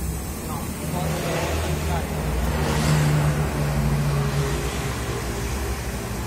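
City bus engine running close by, with a steady low hum that swells in loudness around the middle and eases off toward the end.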